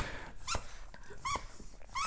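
Faint, short high squeaks from a small dog playing with a red spiky rubber ball, about half a second in and again just past a second.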